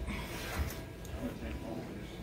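Wooden rolling pin rolling back and forth over cookie dough on a wooden table.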